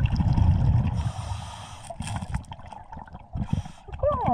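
Underwater sound of a scuba diver breathing: exhaled bubbles gurgling for the first second or so, then short airy hisses of breathing through the regulator about a second in and again near the end.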